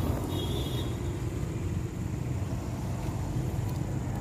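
Heavy rain falling: a loud, steady wash of noise.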